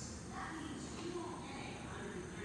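Faint, indistinct speech over a steady background hum.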